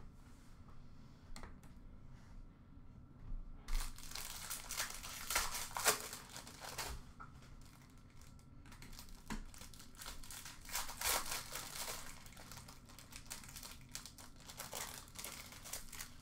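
Foil trading-card pack wrappers being torn open and crinkled by hand. A few light clicks come first, then dense crinkling and tearing starts about four seconds in and is loudest for the next few seconds before easing to lighter crinkles.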